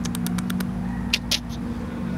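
A steady low mechanical hum, like a running engine, with scattered light clicks and two short hissy scraping noises a little after one second in.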